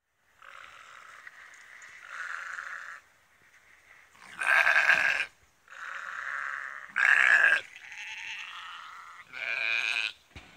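Sheep bleating, a run of calls: fainter, longer bleats at first, then two loud close bleats about four and a half and seven seconds in, and another just before the end.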